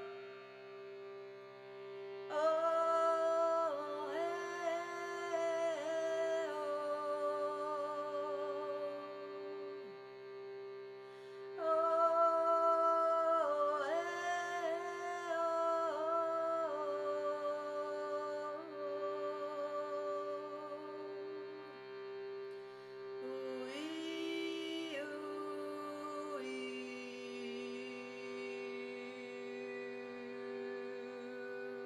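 A woman singing long, wordless held notes with a wavering vibrato over a steady, unchanging drone, in three phrases that each start louder and fade.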